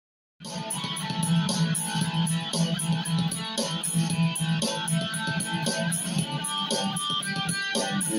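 Heavy metal music that starts suddenly about half a second in: a backing track with a steady drum beat and bass, with an Ibanez electric guitar played over it.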